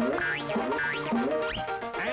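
Cartoon music cue with quick rising, sliding notes, about three upward sweeps over held notes.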